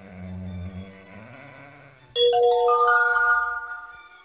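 A low sound rising in pitch comes first. About two seconds in, a loud rising arpeggio of clear, bell-like sustained tones rings out, each note entering just above the last, and it fades near the end.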